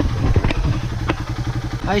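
Suzuki Raider 150 motorcycle's single-cylinder engine idling with an even, rapid beat.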